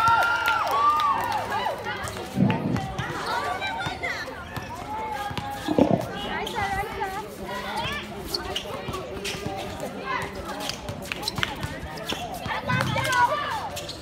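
Basketball game on a hard outdoor court: voices shouting and calling out, loudest near the start, with a basketball bouncing on the court now and then, most plainly about two and a half seconds in and again around six seconds.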